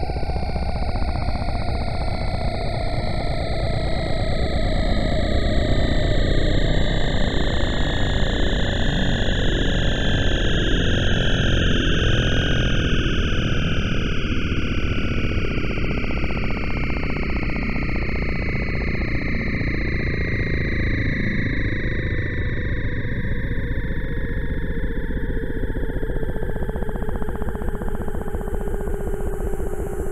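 Yamaha DX7 IID FM synthesizer sounding a sustained, noisy sound-effect patch. A dense low rumble sits under several wavering high tones, and these tones slowly glide downward in pitch.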